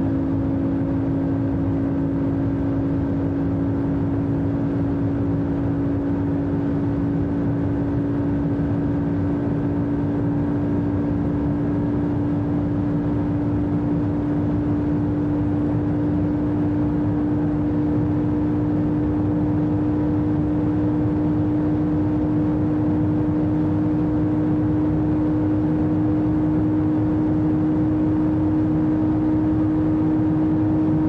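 Inside the cabin of a McLaren MP4-12C, its twin-turbo V8 holds a steady drone at very high constant speed, mixed with road and wind noise. The pitch creeps slightly upward as the car keeps gaining speed.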